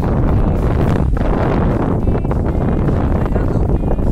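Wind buffeting the microphone on an open boat, a loud, steady rumble.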